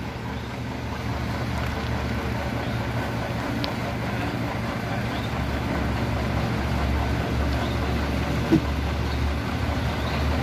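Mitsubishi Fuso FM215 truck's 6D14 inline-six diesel engine running at low speed with a steady low drone as the truck rolls slowly up and stops, a little louder in the second half. A single short sharp sound about eight and a half seconds in.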